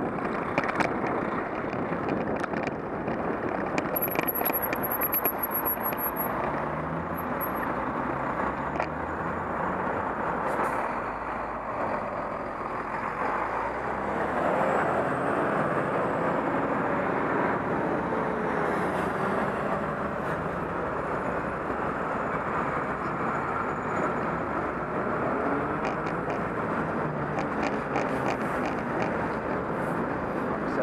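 Heavy road traffic heard from a moving bicycle: lorry and car engines running close alongside, their notes rising and falling now and then over a steady rumble of tyres and wind.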